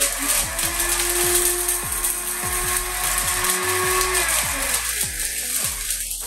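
Mariot BLW-03R 2200 W commercial blender motor switched on and running at high speed: a loud, dense whir that starts abruptly and eases off near the end.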